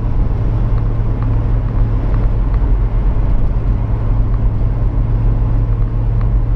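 Older car driving at a steady speed, heard from inside the cabin: a steady low engine drone mixed with road noise.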